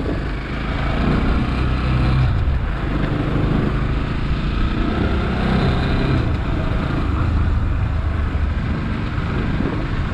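Motorcycle engine running steadily as the bike is ridden along.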